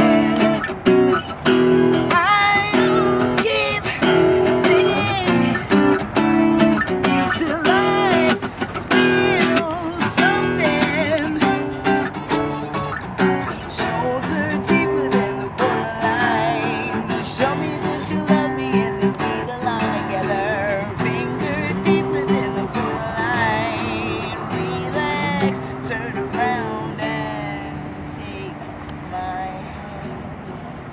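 Acoustic guitar strummed and picked as a woman sings over it, growing quieter near the end.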